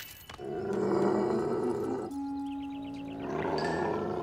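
A cartoon dog growling low and continuously, as a threat, with a held note of background music through the middle.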